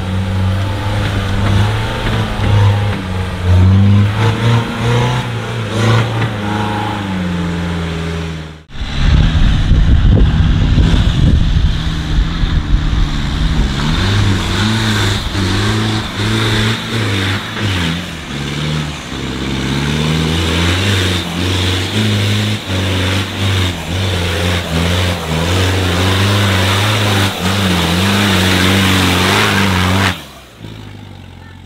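Off-road 4x4 engines working through mud, revs repeatedly rising and falling as the drivers feed throttle on the climbs. The sound cuts out briefly about nine seconds in, followed by a few seconds of loud rushing noise before the engine note returns.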